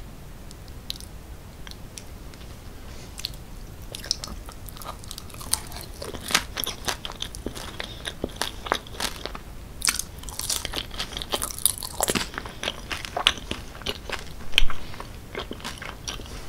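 Close-miked mouth sounds of a person chewing a forkful of cheese-sauce-covered fries: a quick run of small wet clicks and smacks that starts about four seconds in and grows busier, with the loudest smack near the end.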